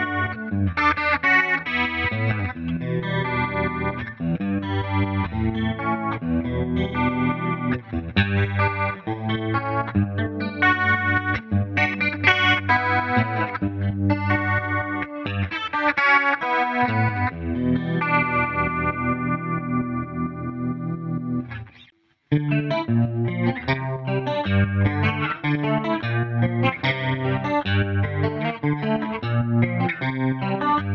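Harley Benton DC Junior electric guitar with its single P-90 pickup, played with a pick through an amp: chords and riffs picked and strummed. About two-thirds of the way through, a chord is left ringing for a few seconds and cuts to a moment's silence, then the playing starts again.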